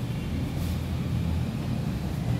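A steady low rumble runs throughout, with the brief swish of a cloth duster wiping a whiteboard about half a second in.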